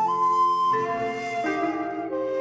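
Pan flute playing a slow melody of held notes, moving to a new note about every three quarters of a second, over a low sustained accompaniment.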